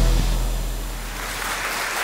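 A deep boom closing off a music sting, dying away over the first second or so, then an audience's applause fading in.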